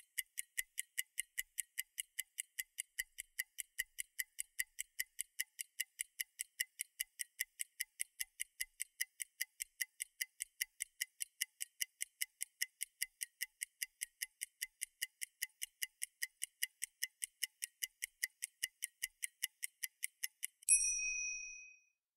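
Clock-ticking countdown timer sound effect: thin, high, evenly spaced ticks at about four a second. The ticking ends near the end in a single bright ding that rings out for about a second, signalling that the time allowed for the exercise is up.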